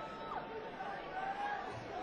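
Concert audience chattering and murmuring, with a held high tone that slides down and stops about half a second in.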